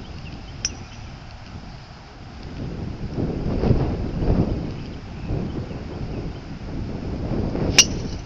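Wind buffeting the microphone, swelling about three seconds in. Near the end comes one sharp crack of a driver striking a golf ball off the tee.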